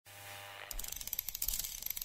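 Rapid, uneven mechanical clicking, like a ratchet or clockwork being wound, starting about a third of the way in over a faint low hum. It is a produced sound effect in the opening studio ident.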